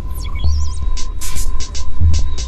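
Loud experimental electronic noise music: a deep bass hum under a steady high tone, with repeated bursts of hiss and wavering, warbling electronic tones.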